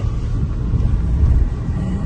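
Steady low rumble of a Hyundai car's engine and tyres heard from inside the cabin while driving.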